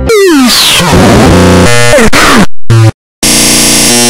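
Deliberately overloaded, distorted electronic sound effects at ear-splitting volume. Several falling pitch sweeps come first, the sound drops out to silence briefly just before three seconds in, then a harsh, steady-toned blast returns.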